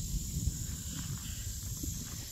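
Quiet outdoor ambience: a low rumble of wind on the microphone under a steady, high-pitched buzz of insects.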